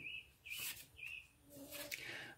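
A small bird chirping faintly: three short, high chirps about half a second apart.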